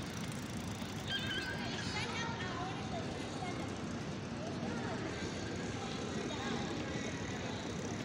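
Steady outdoor background noise with faint, distant voices, including a few brief high-pitched calls about a second in.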